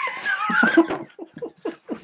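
Men laughing: a high, wavering laugh first, then a run of short, quick bursts of laughter.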